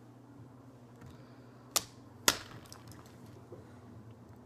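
Two sharp clicks about half a second apart from a plastic game spinner being flicked and spun on the table, over a faint steady hum.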